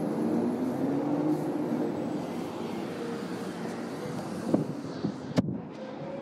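Street traffic: a passing vehicle's engine hum fades over the first few seconds over a steady street noise, then a sharp click comes about five and a half seconds in.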